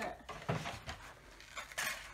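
Light handling noises of cardboard packaging and a chocolate egg: a few small taps and rustles, with a brief crinkling rustle near the end.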